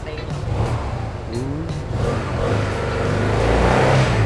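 Fuel-injected Yamaha scooter engine being revved with the throttle while hooked to a diagnostic scanner during a running inspection. The engine gets louder through the second half.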